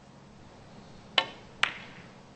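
Two sharp clicks of a snooker shot, about half a second apart: cue and ball striking on the table, over a low steady hum.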